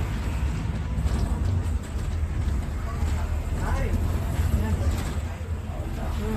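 Steady low engine and road rumble heard from inside a moving bus, with faint voices in the cabin.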